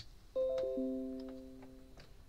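A short chime of four notes at different pitches, entering one after another in quick succession about a third of a second in, then ringing on and slowly fading.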